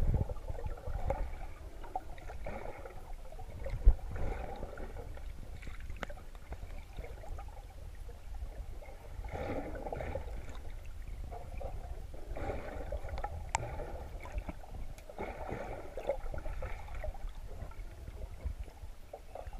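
Muffled water swishing and gurgling around a camera held underwater, in irregular patches over a steady low rumble, with one sharp knock about four seconds in.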